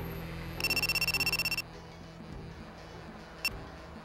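Mobile phone ringing: a rapid, high electronic trill lasting about a second, then one short beep of the same tone near the end, as an incoming call comes in. Low background music runs under the first part and stops with the ring.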